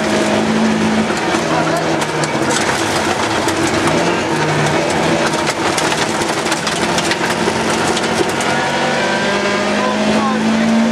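Rally car engine running hard under load, heard from inside the cabin, its pitch stepping up and down with the gear changes, over steady gravel road noise with many sharp ticks of stones striking the car's underside.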